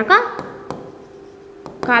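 A pen writing on a display board: faint scratching with a few light taps of the tip.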